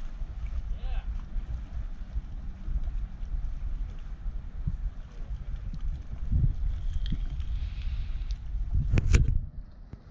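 Wind buffeting the microphone over open water, a steady low rumble, with a faint distant voice about a second in and a brief sharp burst of noise a little after nine seconds, the loudest moment.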